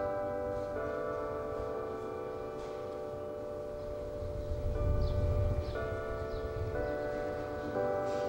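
Bells chiming slowly: long ringing tones that overlap and hang on, with a few new notes struck near the start and again in the second half.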